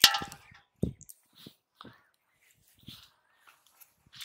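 A sharp metallic clang with a brief ringing tail from the steel fish basin being struck, followed about a second later by a dull thump, then faint scattered handling sounds.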